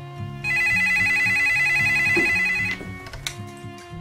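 Corded landline telephone ringing once: a rapid warbling trill lasting about two seconds, starting about half a second in.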